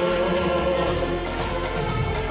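Church wind orchestra of brass and woodwind instruments with electronic keyboards playing sustained chords.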